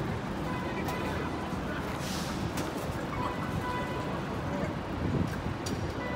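Busy city street: the steady rumble of traffic with passers-by talking, and a brief hiss about two seconds in.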